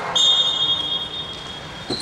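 Referee's whistle blown in one long, steady, shrill blast that stops play, loudest at first and fading over about a second and a half.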